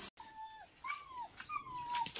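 An animal's calls: a few short, thin whining notes, each about half a second long and bending downward in pitch, following one another about half a second apart.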